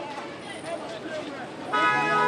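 Background chatter of a crowd, then near the end a car horn sounds once, a short steady toot of about half a second.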